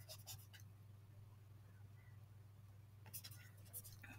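Faint scratching and tapping of a stylus writing on a digital writing surface, in short strokes near the start and again about three seconds in, over a steady low hum.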